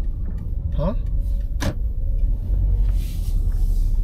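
Car engine and tyres heard from inside the cabin as a low, steady rumble while the car rolls slowly, with a single sharp click about one and a half seconds in.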